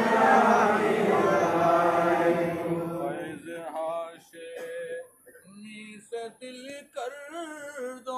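A group of men chanting a devotional recitation together, many voices overlapping. About three seconds in the group drops away, leaving a single male voice singing the melody alone in short phrases.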